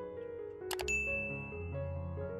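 Soft background music with a sound effect about three-quarters of a second in: a quick double click, then a bright bell-like ding that rings on and fades. It is the mouse-click and notification-bell effect of a subscribe-button animation.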